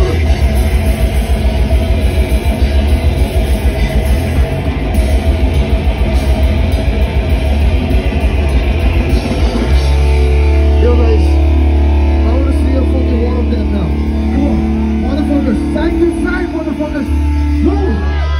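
Live heavy rock band playing loud: fast drumming and distorted guitar for about ten seconds, then a switch to slow, held guitar chords with heavy bass, and voices shouting over it near the end.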